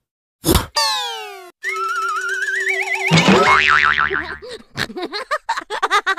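A thump about half a second in, then cartoon comedy sound effects: a falling boing, a wobbling warble that climbs in pitch, and near the end a quick run of short squeaky giggle-like sounds.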